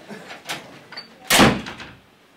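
A couple of light clicks, then a door shutting with a loud thud about three-quarters of the way through.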